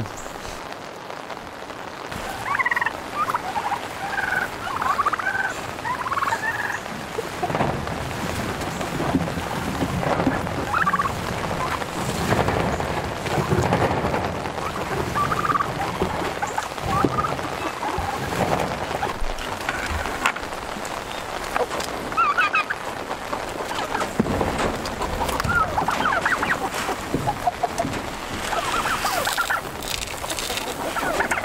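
Turkeys calling again and again in short, high-pitched yelps and chirps, over the steady hiss of falling rain.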